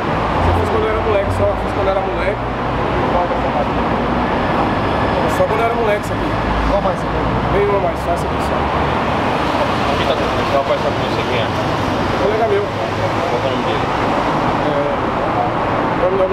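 Steady road traffic noise from a busy highway, with a deep rumble that swells twice, near the start and again around six to seven seconds in, under low talk.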